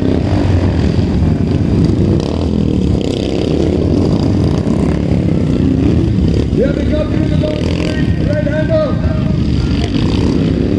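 Several race motorcycles, Royal Enfields, running loud on a dirt track, their engines revving up and down as they pass, with voices over the engine noise.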